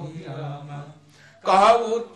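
A man chanting a Sanskrit verse in a slow sing-song recitation, holding a low note, breaking off briefly past the middle, then starting a louder phrase near the end.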